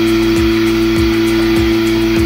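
Portable milking machine running: a steady motor hum from its vacuum pump with a rhythmic low pulse about twice a second from the pulsator as the teat cups are put on a water buffalo.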